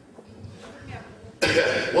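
A man coughs into a handheld microphone: after a quiet pause, a sudden loud cough comes about a second and a half in.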